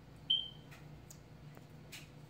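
Fingertips patting and pulling sticky slime on a glass tabletop, with a few faint short clicks. About a third of a second in, a brief high-pitched tone, the loudest sound, sounds and fades quickly.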